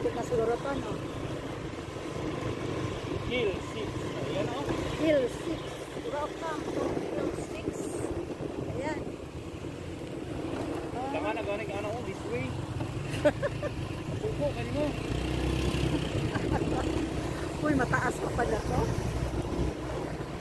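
Small motorcycle engine running steadily under way, a continuous low rumble, with people's voices talking over it at times.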